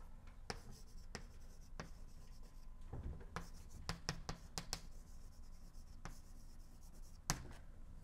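Chalk writing on a blackboard: faint, irregular taps and scratches as the chalk strokes letters, bunched together in the middle, with a sharper tap shortly before the end.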